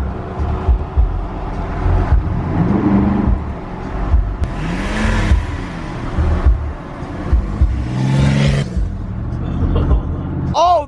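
Pickup truck driving, heard from inside the cab: a steady low engine and road rumble with irregular low thumps.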